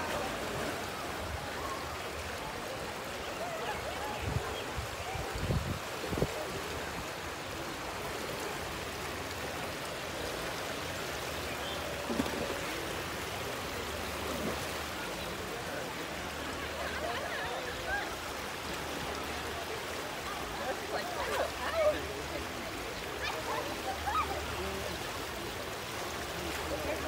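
Steady rush of water running down the water slides and pouring out of the slide exits into the pool, with faint voices of people around the pool.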